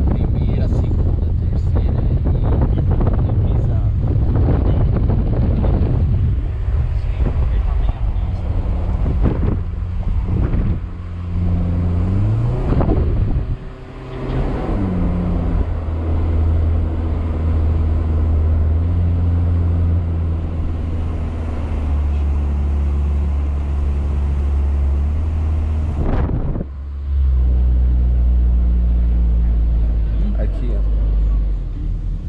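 A small car's engine heard from inside the cabin with the windows open, with wind buffeting the microphone in the first seconds. Around the middle the engine revs rise, then drop off briefly at a gear change and settle into a steady drone, with another short dip near the end.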